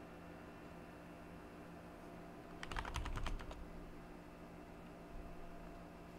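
Computer keyboard typing: a quick run of about eight keystrokes in roughly a second, near the middle, over a faint steady hum.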